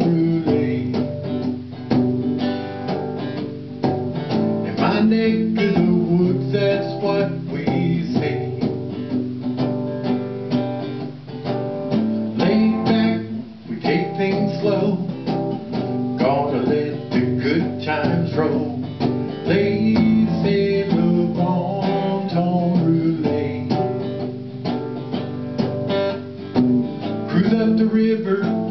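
Song music led by a strummed acoustic guitar, keeping a steady rhythm with no words sung.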